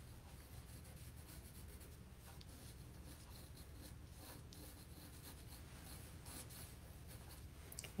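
Faint, irregular scratching of a wooden graphite pencil sketching on watercolor paper.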